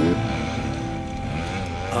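Dirt bike engine running, in a pause between the sung lines of a song whose backing carries on underneath.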